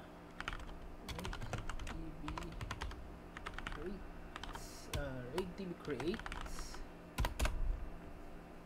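Typing on a computer keyboard: runs of clicking keystrokes as shell commands are entered, with a few louder keystrokes near the end as the command is submitted. Some unclear voice sounds come in between the keystrokes.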